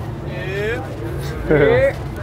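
Passers-by's voices on a busy street over a steady low rumble of traffic, with one louder voice about a second and a half in.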